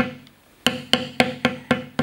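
Mallet tapping a metal beveling stamp into leather: one strike, a short pause, then a run of light, even strikes at about four a second as the tool is walked along a cut line.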